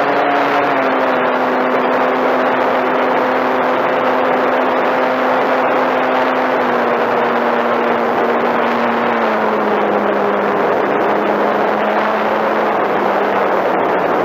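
A model airplane's motor and propeller heard up close from the onboard camera: a steady whine over the rush of wind on the microphone. The pitch steps down about a second in and twice more later on, as the throttle is eased back.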